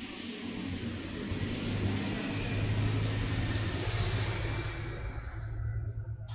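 A motor vehicle passing by: a rushing engine-and-tyre sound that builds, peaks about halfway through, then fades away.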